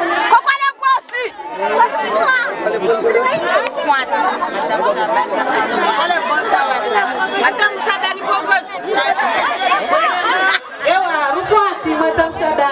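Several voices talking loudly over one another: overlapping chatter with no single clear speaker.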